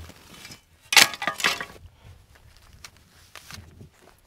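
A shovel blade scraping and crunching into crusty red sand, one loud gritty scrape about a second in lasting under a second, then only faint small ticks.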